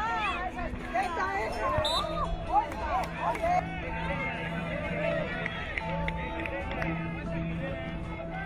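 Children's voices shouting and calling during a football game. From about two seconds in, soft music of long held notes comes in and carries on as the shouting dies away.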